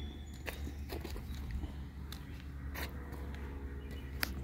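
Footsteps on a muddy, rocky creek bank: a few scattered sharp steps and clicks over a steady low rumble.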